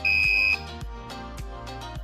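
Active piezo buzzer module giving one steady, high-pitched beep of about half a second at the start, loud over background music.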